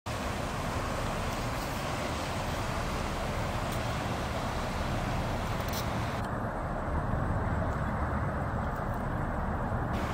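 Steady low rumble of a passing river hotel ship's engines, growing slightly louder about seven seconds in.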